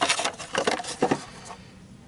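Several light knocks and rattles of a plastic winch solenoid cover being handled, bunched in the first second or so.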